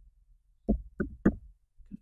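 Three computer keyboard keystrokes about a third of a second apart, typing the last letters of a word.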